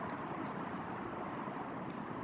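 Steady town-street background noise, a low hum of distant traffic with no distinct events.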